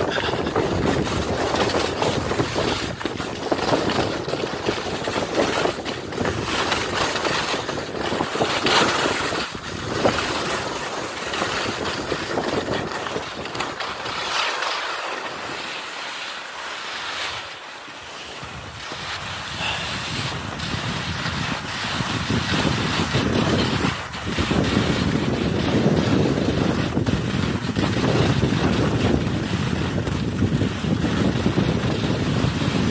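Wind buffeting the microphone, a steady rush that eases off briefly about halfway through and then picks up again.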